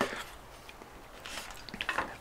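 A folding knife and pieces of thick plastic hose handled on a wooden board: a click at the start, then faint scrapes and small clicks near the end as the blade works the hose.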